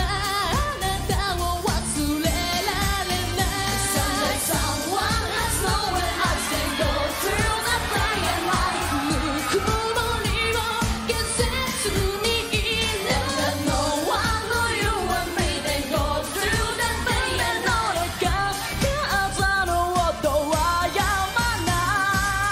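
Live J-pop song: female voices singing into microphones over pop backing music with a steady beat.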